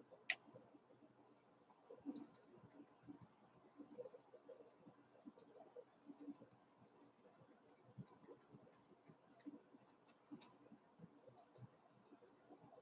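Faint, sparse ticks and clicks with a thin, high, steady whine. The whine starts right after a click near the start and fades out about two-thirds of the way through. It is typical of a homemade static grass applicator made from an electric bug-zapper fly swatter, its button held in while it is worked over a glued patch.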